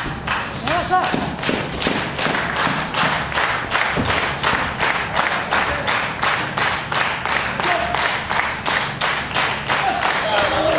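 Steady rhythmic clapping or hand slaps, about four a second, kept up without a break. A voice calls out briefly about a second in and again near the end.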